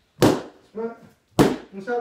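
A long stick striking a hand-held striking pad: two sharp whacks about a second apart, part of a steady run of drill strikes.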